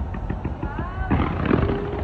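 Burj Khalifa New Year's fireworks going off in rapid pops and crackles over a low rumble. Voices whoop and cheer over them, and the noise swells a little past halfway.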